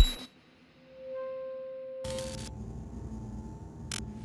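The loud audio cuts off suddenly. About a second later a single clear, steady electronic tone swells in, holds, and fades out over about a second and a half. A faint low hum with a thin high whine follows.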